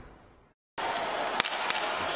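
Ice hockey arena crowd noise fades out to a brief silent gap, then resumes as a steady crowd hum. Two sharp clicks of stick and puck sound about halfway through.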